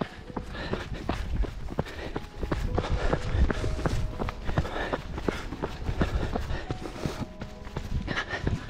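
A runner's trail shoes striking a muddy dirt path in a quick, steady rhythm of footfalls.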